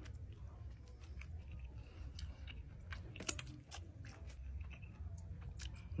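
Close chewing and biting of a grilled corn cob (elote) coated in crushed potato chips and Flamin' Hot Cheetos, with irregular crisp crunches, the sharpest a little past the middle.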